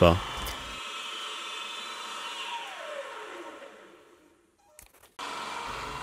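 Sieg X2.7L mini mill running at high spindle speed with a solid carbide endmill cutting aluminium, a steady whine with several high tones. A couple of seconds in, the whine falls in pitch and fades away as the spindle winds down. After a short silence, a steady machine sound starts again near the end.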